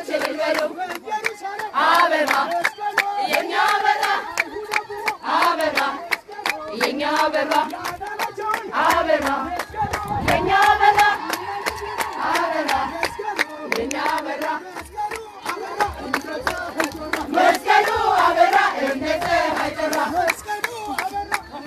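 A crowd singing and chanting together in many voices, with steady rhythmic hand clapping throughout.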